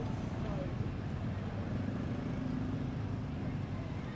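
Low, steady rumble of a minibus engine passing on a nearby road, with indistinct voices underneath.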